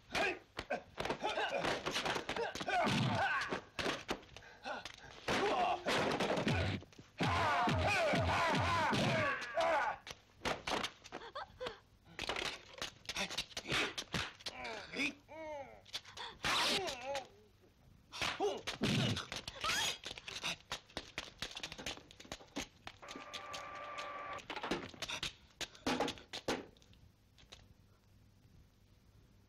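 A run of thuds and knocks with groaning, voice-like sounds between them.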